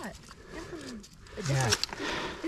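Short, wordless voice sounds from people, the loudest a low exclamation about one and a half seconds in, over the faint steady trickle of a shallow creek.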